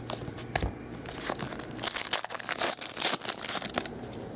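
A foil trading-card pack wrapper crinkling as it is torn open and handled, with a run of light clicks and rustles of cards, busiest from about a second in until shortly before the end.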